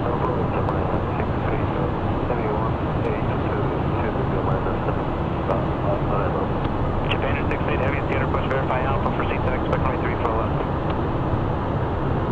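Steady cockpit noise of a Cessna Citation 501 business jet in flight: the hum of its turbofan engines and airflow around the cabin, unchanging in level, with a faint voice about seven seconds in.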